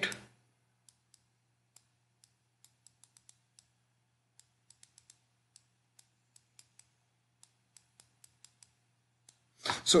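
Light, irregular clicks of a stylus tip tapping on a drawing tablet or touchscreen as words are handwritten, about thirty of them, over a faint steady low hum.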